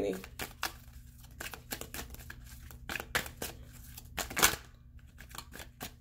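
A tarot deck being shuffled by hand: the cards slap and snap against one another in a quick, irregular run of clicks, the loudest about four and a half seconds in.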